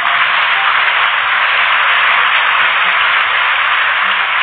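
A loud, steady hiss like static, switched on suddenly and held without change.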